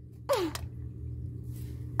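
A child's short spoken 'uh', falling in pitch, then a low steady hum with no other clear sound.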